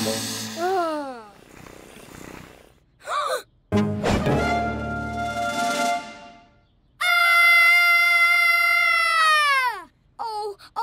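Cartoon soundtrack of pitched sounds: a few quick falling glides, a short swoop, then two long held tones, the second sliding down in pitch at the end.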